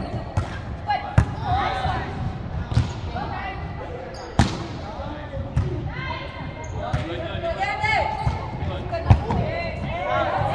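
A volleyball rally in a large, echoing gym: several sharp ball impacts, the loudest about four and a half seconds in, under women's voices calling and shouting on court.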